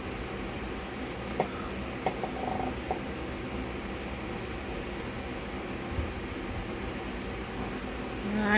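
Steady low room hum with a few light clicks and taps, about one and a half, two, three and six seconds in, from small objects being handled.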